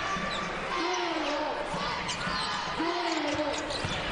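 Basketball game sound in an arena: a ball being dribbled on the hardwood court over crowd noise, with long voice-like calls rising and falling twice.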